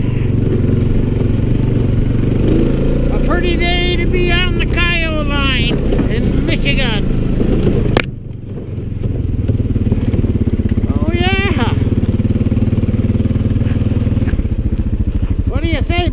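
Quad (ATV) engine running steadily while riding. About halfway through there is a sudden click and the engine sound drops away briefly, then runs on steadily again.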